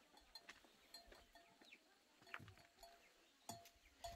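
Near silence, with faint scattered farm-animal calls and a few soft clicks.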